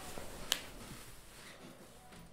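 A single sharp click about half a second in, over faint room tone.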